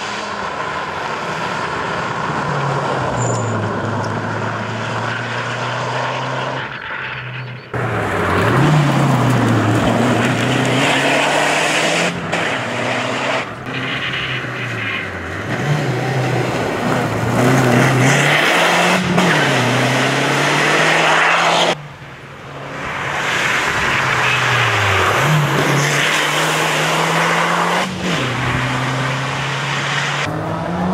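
A Lancia rally car's engine driving past hard, its pitch climbing and then dropping at each gear change. The sound cuts abruptly about 8 seconds in and again about 22 seconds in, joining separate pass-bys.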